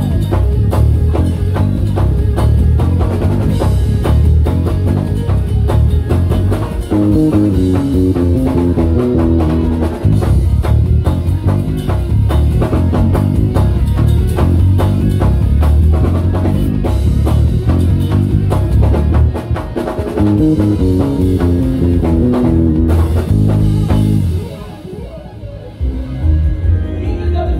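Music Man StingRay 5 five-string electric bass played through an amplifier over a drum groove. The bass holds a deep line, breaks into higher runs of notes twice, and the music drops low briefly near the end.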